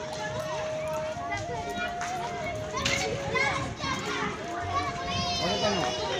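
Many children shouting, chattering and squealing as they play, with a high shriek about five seconds in. A steady held tone that shifts in pitch in small steps runs underneath.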